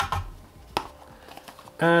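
Light handling noises of a small plastic device and its packaging: a soft knock at the start, then one sharp click under a second in and a few faint ticks.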